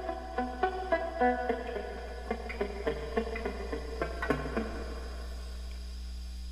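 Amplified electric guitar picking a short, simple backing figure over and over; the notes thin out and stop about four and a half seconds in. A steady mains hum from the amp runs underneath.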